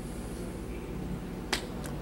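Quiet room tone with a single sharp click about three-quarters of the way through, followed by a fainter click.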